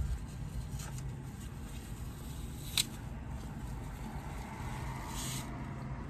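Quiet car-cabin background with a low steady hum and small handling noises, including one sharp click about three seconds in.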